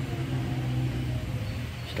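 A steady low mechanical hum, even throughout.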